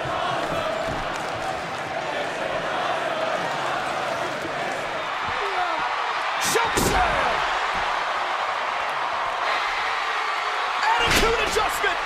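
Wrestling-style slam sound effects over a steady background of arena crowd noise. One heavy slam lands about six and a half seconds in, and a second burst of slams comes near the end.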